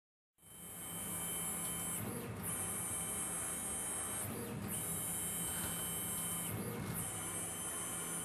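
Lunar DEXA scanner's scanning arm motor running with a steady high whine and low hum, starting about half a second in and cutting out briefly about every two seconds.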